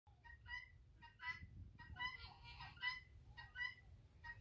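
Faint bird calls: short pitched calls in pairs, repeating about every three-quarters of a second.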